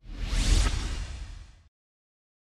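A whoosh sound effect that starts suddenly, swells with a rising sweep and fades out within about a second and a half.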